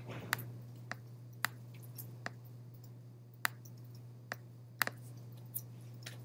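Computer mouse clicking: about nine short, sharp clicks at irregular intervals, over a steady low hum.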